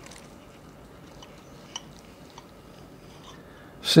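Table knife and fork cutting through a baked bacon-wrapped chicken breast on a plate: faint crunching of the crispy bacon, with a few light clicks of the utensils.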